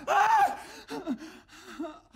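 A man's loud scream that breaks off about half a second in, followed by quieter broken cries and breaths.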